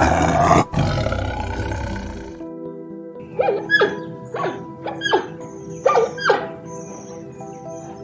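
A tiger roars for about two seconds. Then come about seven short, sharp calls that sweep steeply in pitch, from a giant panda. Background music plays throughout.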